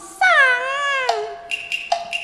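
Cantonese opera (粵曲) performance: a long drawn-out note that bends down and back up for about a second, then a steady held tone with a few short accompanying notes on top, leading into the music.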